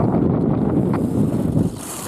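Wind buffeting a moving camera's microphone as it follows a skier downhill: a steady, loud rumble. It dips briefly near the end, then a short higher hiss follows.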